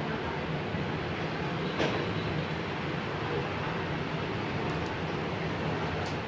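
Steady background hum and rushing noise, like a running machine, with a single short click about two seconds in.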